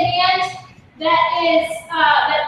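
A high voice singing in two drawn-out phrases, with a short break just before halfway.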